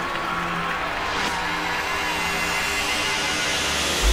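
Psytrance breakdown with no kick drum: held synth tones under a noisy sweep that rises in pitch.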